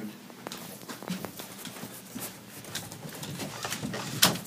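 Footsteps going down a staircase, a string of irregular soft knocks about two or three a second, with rustling from the handheld camera.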